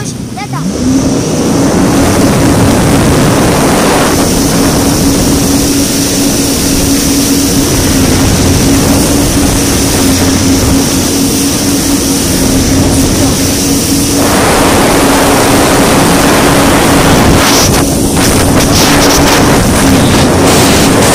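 Jet ski engine revving up in the first second, then running at a steady high pitch at speed, over a rush of wind and spray.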